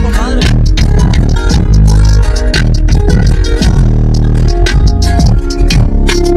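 A song played loud through a pickup truck's newly installed car audio system, with heavy bass from the subwoofers and a steady beat about twice a second.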